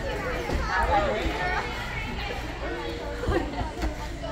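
Indistinct talking of several voices in the background, with a couple of short knocks near the end.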